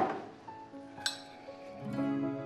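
Clinks of tableware, china or cutlery at a breakfast table, one sharp clink right at the start and a second about a second in, over soft background music of sustained notes.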